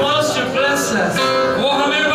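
A man singing a slow worship song into a microphone, with long held notes that glide between pitches.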